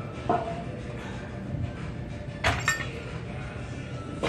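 Metal clinks and knocks from a cable crossover machine during a set: one ringing clink just after the start, then two sharp knocks in quick succession about two and a half seconds in, over steady gym background noise.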